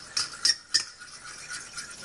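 Metal fork stirring gravy in a stainless steel skillet, scraping and clinking against the pan in quick repeated strokes, with a few sharper clinks in the first second. A cornstarch-and-water slurry is being stirred into the pan stock to thicken it evenly.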